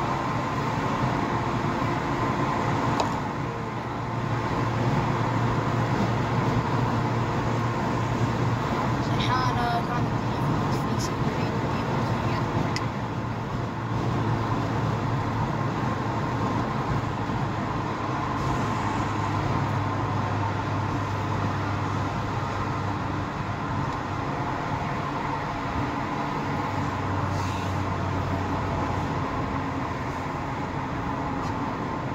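Car engine running at low revs with road noise, heard from inside the cabin while creeping in stop-and-go traffic: a steady low hum.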